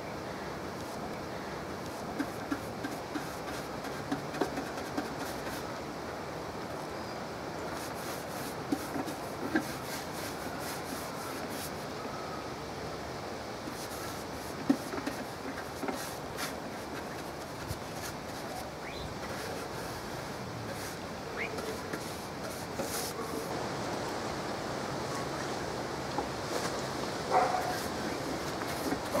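A paintbrush being dipped in a tin of oil-based stain and brushed over a wooden box, heard as scattered light taps and clicks over a steady, quiet background hiss.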